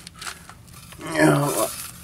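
A man's drawn-out hesitation sound, like a thoughtful "ähm", about a second in. Before it, faint rustling and scratching of a sheet of metal mesh being handled.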